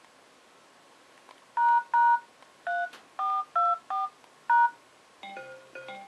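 Touch-tone (DTMF) beeps from a smartphone's dialer keypad: seven short two-tone keypresses, spelling ##3424#, the HTC EVO's diagnostic-mode code. A quieter electronic chime follows near the end.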